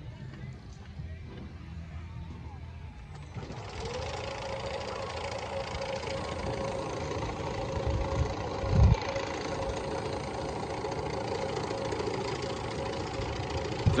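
Mountain-coaster sled running along its rail toward the listener: a steady whirring rumble with one held tone that comes in about three and a half seconds in and grows louder as the sled nears. A single low bump about nine seconds in.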